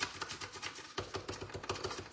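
Bone folder rubbed over a paper fold in a quick run of short scraping strokes.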